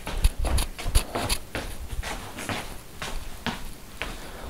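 Footsteps on a hardwood floor with handling noise from a body-worn camera: an irregular scatter of light clicks and low thumps.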